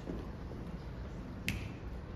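A single sharp finger snap about one and a half seconds in, over low steady room noise. It begins an evenly spaced snapped beat that counts in an a cappella group.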